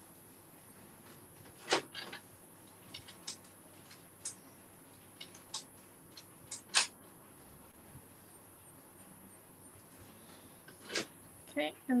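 A black pen writing loose scribbled script on a painted journal page: scattered short scratches and taps as each stroke touches the paper, at irregular moments over a quiet room.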